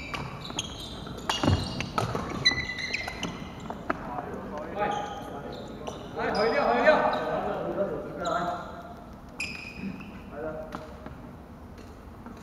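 Badminton play on a wooden sports-hall court: sharp racket strikes on the shuttlecock and shoe squeaks on the floor, ringing in the hall. Players' voices are heard for a couple of seconds past the middle.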